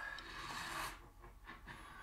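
Faint movie-trailer sound effects: a rushing noise that swells and cuts off just under a second in, followed by a low, quieter rumble.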